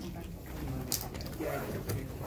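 Faint, low, indistinct voices murmuring in a classroom, with a brief sharp click about a second in.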